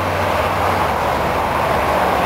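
Road traffic: a car driving past on the road, a steady rush of tyre and engine noise.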